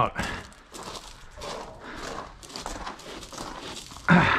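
Footsteps on loose gravel at a walking pace, a run of short crunching steps.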